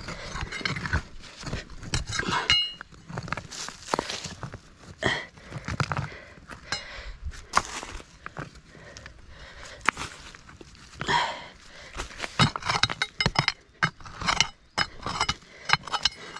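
A blue-handled digging bar jabbed and scraped into stony soil: irregular clinks and knocks of metal on stone, with scraping and loose dirt between strikes.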